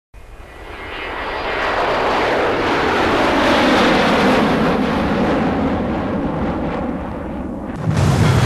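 Cartoon rocket-flight sound effect: rushing engine noise that starts suddenly, swells over the first two seconds, then falls steadily in pitch as the rocket dives back toward the ground.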